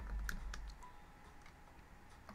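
Computer keyboard typing: a few quick keystrokes in the first half second over a low rumble, then a couple of faint clicks. The keys are entering AutoCAD's polyline command.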